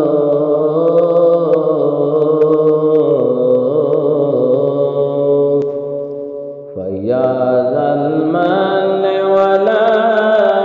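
An Arabic Ramadan supplication chanted melodically by one voice, drawn out in long held notes. It dips briefly about seven seconds in, then a new phrase starts low and climbs.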